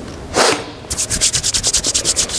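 Hands rubbed briskly together close to a headset microphone: a fast even run of hissy strokes, about ten a second, starting about a second in, after one short brush about half a second in.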